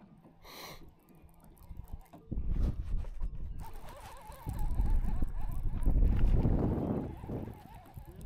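Wind gusting on the microphone, a deep irregular rumble that starts about two seconds in and is loudest in the second half, with a short wavering high tone near the middle.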